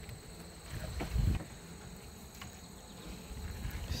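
Faint steady insect sound, with a couple of low knocks about a second in as a wooden honey frame is worked loose from the hive.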